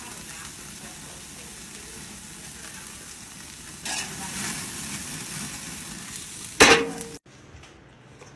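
Steaks sizzling as they sear over an open grill flame, a steady hiss that grows louder about four seconds in as more meat goes onto the hot grate. A short loud burst comes near the end, then the sizzle cuts off abruptly to a much quieter background.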